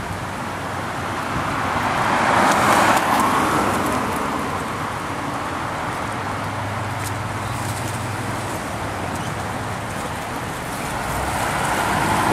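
Engine and tyres of a Chevrolet ambulance van as it pulls out and drives slowly past, loudest about two to three seconds in. No siren is sounding.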